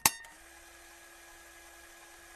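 Logo sting sound effect: one sharp metallic clang, then a faint, steady ringing tone.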